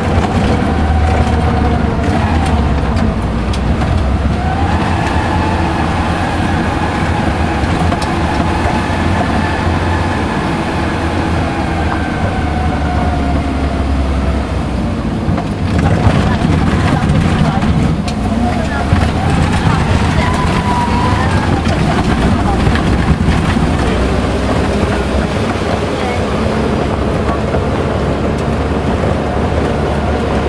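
Tour vehicle's engine and drivetrain running while the vehicle drives over a dirt track: a steady low drone with a whine that slowly rises and falls as the speed changes, and frequent knocks and rattles over bumps.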